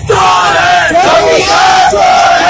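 A crowd of men shouting protest slogans together, loud and continuous.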